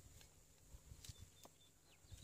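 Near silence, with a few faint clicks and soft handling noises from rope being worked on a metal rappel device and carabiner.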